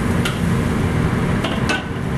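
Metal spatula clinking and scraping against a wok as soup is stirred, a few sharp clicks over a steady low rumble.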